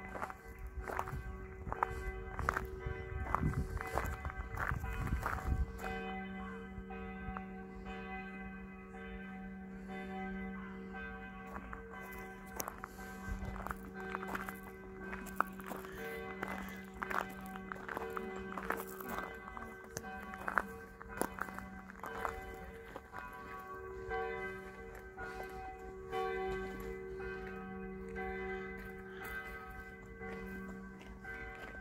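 Bells ringing, their tones sustained and swelling and fading, with footsteps heard over them, most in the first few seconds.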